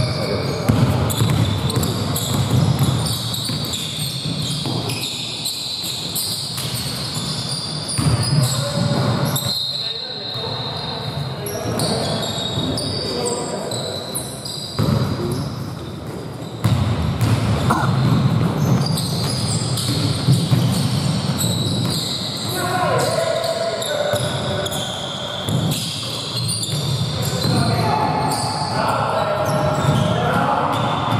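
Basketball game in a large gym: the ball bouncing on the wooden court, with players' voices calling out, echoing in the hall.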